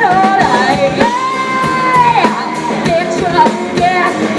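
Live rock band playing: a female lead voice sings and shouts over electric guitars and a drum kit. She holds one long high note from about a second in for just over a second.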